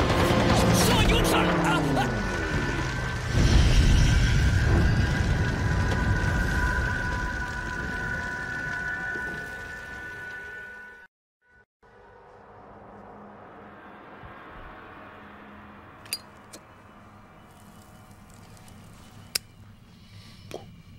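Film battle soundtrack over a burning hut: a voice slides slowly down in pitch, then a deep boom comes about three seconds in, the loudest moment. Music and a held ringing tone follow and fade out. After a brief silence near the middle, a much quieter scene follows with two sharp clicks.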